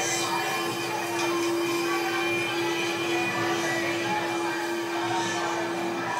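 A single steady tone held unbroken throughout, over a dense rushing noise.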